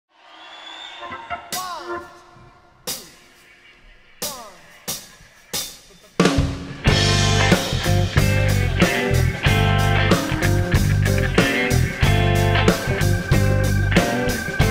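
Live blues-rock band music. It opens sparsely, with a few separate drum hits and electric guitar notes sliding in pitch. About six seconds in, the full band comes in with bass, drum kit and electric guitars playing a steady groove.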